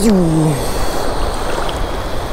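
Surf washing steadily around a wading angler as a baitcasting rod is cast. There is a short grunt falling in pitch at the start, and a faint high whine from the baitcasting reel's spool paying out line.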